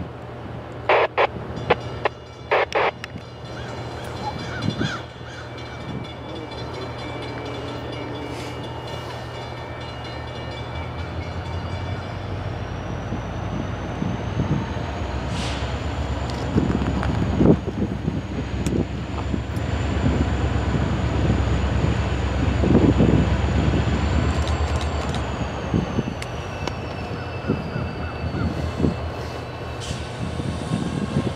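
Norfolk Southern EMD diesel locomotives running as a freight train draws closer, the low engine rumble swelling to its loudest about two-thirds of the way through. A high whine rises about a third of the way in, holds, then falls away near the end, and a few sharp knocks come in the first few seconds.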